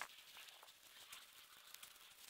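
Near silence, with a few faint soft ticks and rustles, the clearest right at the start.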